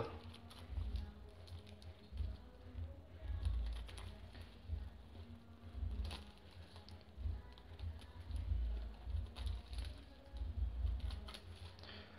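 Scissors snipping through kite tissue paper along a glued edge line: faint, irregular small clicks of the blades, with the thin paper crackling as it is handled.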